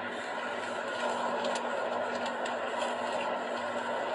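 Steady car cabin noise: an even rush with a low steady hum underneath.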